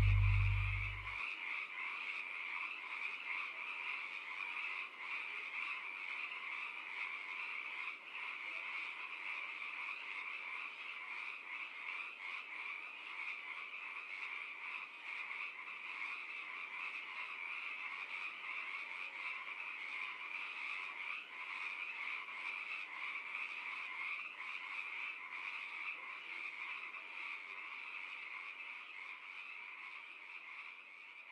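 The last low notes of the song stop about a second in, leaving a steady, dense chorus of many small animals calling rapidly and without pause, fading slightly toward the end.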